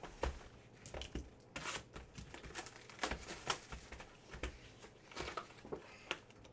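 A cellophane-wrapped cardboard hobby box of trading cards being unwrapped and opened by hand: irregular crinkling and tearing of plastic wrap with scattered sharp clicks, and a few louder rips about one and a half and three seconds in.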